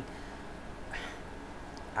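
Steady low room hum in a pause between words, with one faint short sound about a second in.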